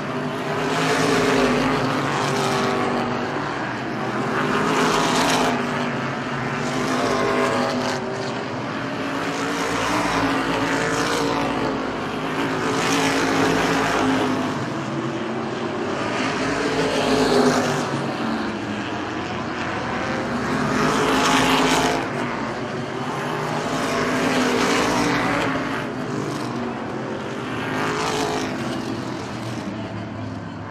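Several oval-track race car engines running at racing speed around a short oval. The pack's sound swells and fades about every four seconds as the cars pass by on each lap, with the engine pitch rising and falling.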